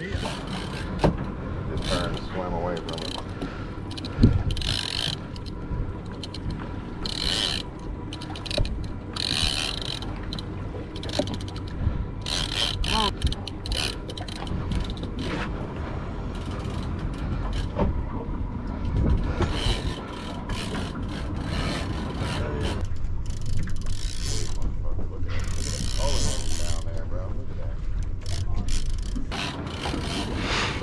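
Fishing reel winding line in on a big fish under load, a run of mechanical clicking and grinding over a steady low rumble.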